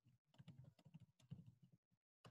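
Faint typing on a computer keyboard: a quick, uneven run of keystrokes.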